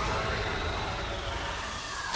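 Trailer sound design: a dense, steady rushing noise with a faint tone that rises at the start and slowly sinks, a dramatic effects swell.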